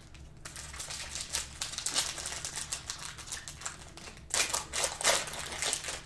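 Plastic cello pack wrappers from Prizm football card packs rustling and clicking quickly as they are handled, then a louder crinkling as a pack is torn open near the end.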